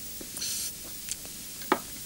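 A short sip from a glass, then the glass set down on a desk with a sharp knock near the end.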